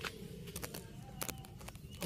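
Faint rustling and several small sharp clicks as a hand moves through the leaves and stems of a potted chilli plant, over a low steady background hum.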